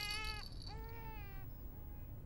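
A baby crying: two wails of about a second each, then a fainter one that dies away.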